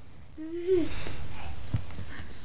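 A young child's short voiced sound, its pitch rising and then dropping, followed by breathy noise. A small knock comes near the end.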